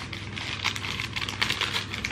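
Paper wrapping crinkling and rustling in quick, irregular crackles as a wrapped souvenir is handled.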